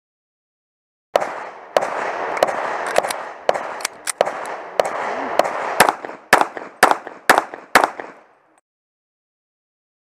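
A string of about fourteen pistol shots from a Para Pro Comp .40 S&W singlestack 1911 firing minor power factor ammunition, about two shots a second and quickening near the end, each with a short echo. The shots start about a second in and stop a couple of seconds before the end.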